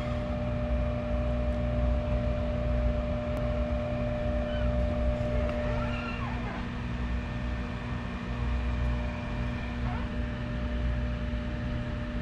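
Steady machine hum: a low drone with a few constant tones above it, unchanging throughout.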